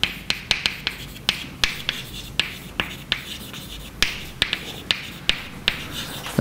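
Chalk writing on a blackboard: an irregular run of sharp taps and clicks as each stroke and dot hits the board, with faint scratching between them.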